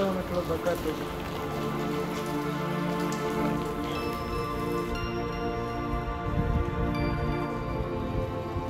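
Steady rain falling, under soft sustained background music chords.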